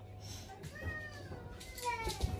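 A cat meowing: one long drawn-out call starting about half a second in, its pitch sliding slowly down.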